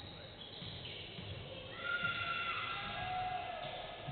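Basketball shoes squeaking on a hardwood court: a run of high squeals starts about two seconds in and lasts nearly two seconds, over irregular low thumps from the play.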